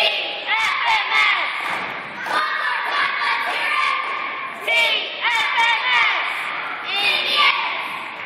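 A group of young cheerleaders shouting a cheer in unison, in short rhythmic bursts of a few syllables each, echoing in a gymnasium.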